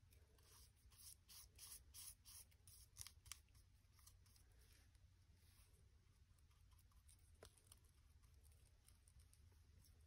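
Faint, scratchy strokes of a flat paintbrush dabbing and dragging gesso over fabric, several in quick succession over the first few seconds, then fewer.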